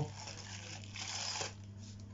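Packaging rustling and scraping as it is handled, a soft noisy rustle that stops about one and a half seconds in, over a low steady electrical hum.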